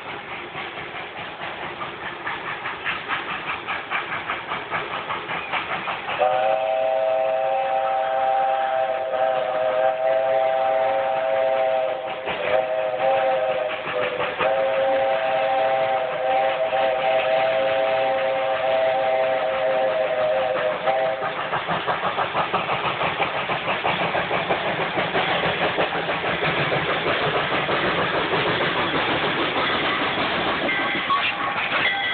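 Flagg Coal No. 75, a small saddle-tank steam locomotive, approaching with its exhaust chuffing louder and louder. Its chime whistle sounds a three-note chord in a long blast, a short one and another long one, about fifteen seconds in all. The chuffing and the clatter of the cars on the rails then grow as the train passes close by.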